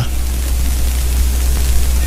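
Steady hiss across the whole range with a low hum underneath, the recording's own background noise.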